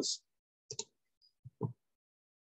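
Computer mouse clicking: a quick double click about three-quarters of a second in, then another pair of duller clicks about a second and a half in.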